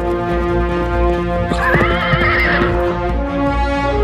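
A cavalry of horses galloping, with one horse neighing about one and a half seconds in: a wavering whinny lasting about a second. Background music with held notes plays throughout.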